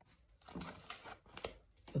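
Tarot cards handled by hand: a few faint rustles and soft taps of card stock as one card is moved aside and the next is brought up.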